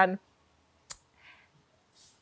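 A single sharp click about a second in, followed by a faint, short breath-like hiss.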